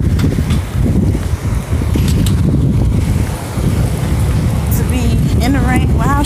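Wind buffeting a phone's microphone outdoors: a loud, rough, continuous low rumble.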